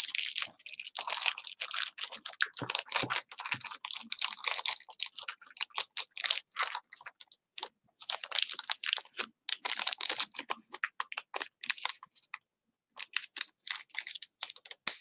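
Small clear plastic bags of beads crinkling and rustling as they are handled, a dense run of quick, light clicks and rustles with two short pauses, one about two-thirds of the way through and one near the end.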